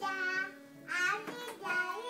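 A singing voice over acoustic guitar and Casio keyboard accompaniment: two sung phrases with held notes, a short break between them about half a second in, over steady sustained instrument tones.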